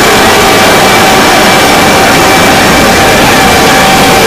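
A loud, dense jumble of many video soundtracks playing over one another at once, with steady tones running through the din.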